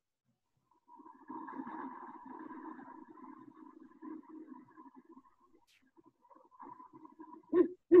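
A recording of a male great horned owl's hooting, played back through a computer. A faint low background murmur runs for the first few seconds, then near the end come two deep hoots close together, with a stutter like the owl is trying to get the first hoot out.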